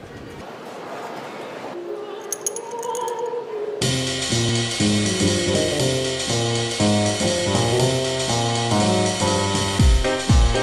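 A rising hiss with a brief jingle, then a swing-style music track starts suddenly about four seconds in, with stepping bass and melody notes.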